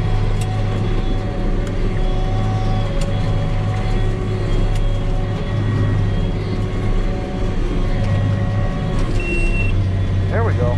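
Tractor engine running steadily under load while pulling a large square baler, heard from inside the cab, with a few faint clicks. A short high beep sounds near the end.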